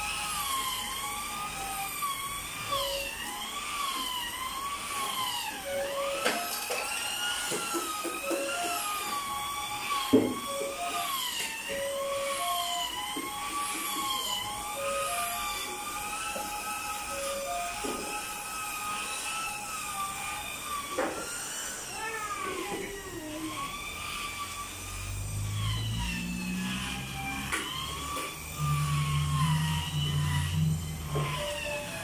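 Handheld electric scrubbing tool worked over fabric sofa cushions, its motor giving a high whine that wavers up and down in pitch. A lower hum joins near the end.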